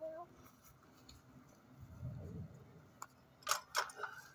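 The last sung 'meow' of a line trails off at the start. A quiet stretch follows, with a faint low rumble about two seconds in and two sharp clicks near the end, about a third of a second apart.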